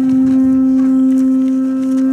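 A horn blown in one long, steady, unwavering note, sounding as the start signal for a tug-of-war pull.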